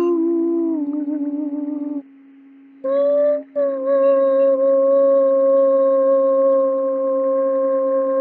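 A man singing or humming slow, long-held wordless notes over a steady low drone. The voice drops out for under a second about two seconds in, then returns on a higher note held to the end.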